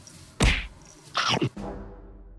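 Edited-in cartoon sound effects: a sudden loud whack with a falling low sweep about half a second in, then a short downward-gliding pitched sound about a second later.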